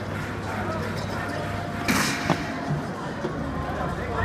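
Automated craps machine shooting its dice: a sudden short hissing burst about halfway through, followed by a sharp knock as the dice land. A thin steady electronic tone and casino background noise run underneath.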